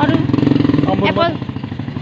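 An engine running steadily nearby, a low even throb under voices.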